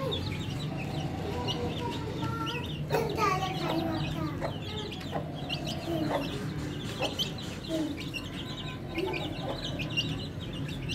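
Young Aseel–desi mix chickens clucking and peeping: a dense run of short high peeps over lower, scattered clucks, with a steady low hum underneath.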